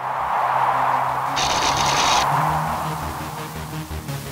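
Intro music and sound effects: a whoosh that swells and fades over low held notes, with a short burst of hiss about one and a half seconds in.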